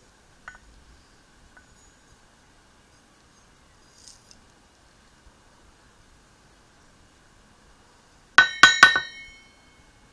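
Stainless steel pan knocked against a digital scale's weighing cup while tipping gold into it: a quick run of about four sharp, ringing metallic clinks near the end.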